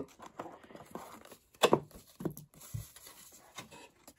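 Handling noise from a collectible display box: paper inserts rustling and sliding as they are pulled out, with a few light knocks against the box, the sharpest click about a second and a half in.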